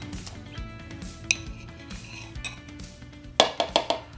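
Metal utensil clinking against a ceramic plate and mixing bowl as cubed butter is scraped into the bowl: one clink about a second in, then a quick run of louder clinks near the end, over background music.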